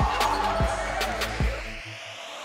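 Soundtrack music with deep booming drum hits over sustained tones; the drums and bass cut out just before the end.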